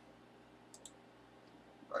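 Two faint, short clicks close together about three-quarters of a second in, over quiet room tone.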